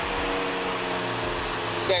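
Steady mechanical hum: several even tones under a soft hiss, holding level without change; a voice starts just before the end.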